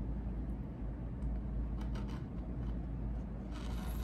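Fiskars rotary cutter blade rolling through folded stretch fabric onto a cutting mat, a few soft scraping strokes as another slit is cut, over a steady low hum.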